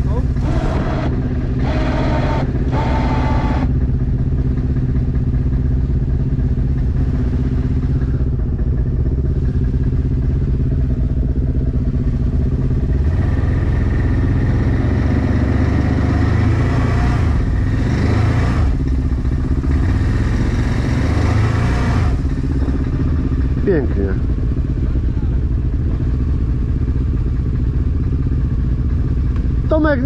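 ATV engine running steadily, then working harder for several seconds partway through as it tows a quad stuck in mud out on a strap.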